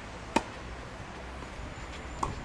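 Tennis racket striking the ball once: a single sharp pop about a third of a second in.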